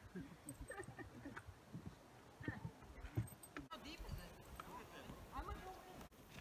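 Faint, indistinct voices of people talking, with a few low thuds.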